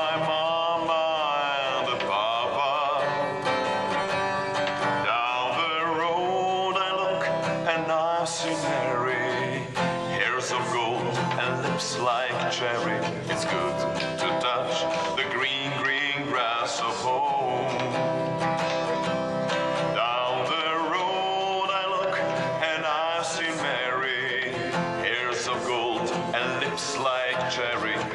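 A man singing a song while accompanying himself on an acoustic guitar, the strummed chords running under his voice, with long held notes that waver.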